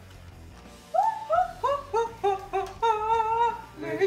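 A high voice singing a wordless tune in a quick run of short notes, each sliding up as it starts, beginning about a second in.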